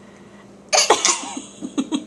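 A sudden cough-like burst from a person about two-thirds of a second in, followed by a quick run of short laughing pulses.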